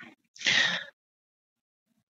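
One short, high-pitched call of about half a second, a little after the man's voice stops, of the meow-like kind rather than a spoken word.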